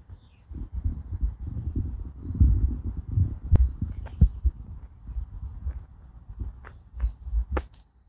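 A few short, high bird chirps over an uneven low rumble that comes and goes, with a couple of sharp clicks about halfway through.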